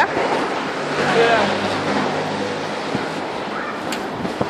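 Steady rushing noise of wind and handling on a handheld phone's microphone, with a faint voice briefly about a second in and a low hum through the middle.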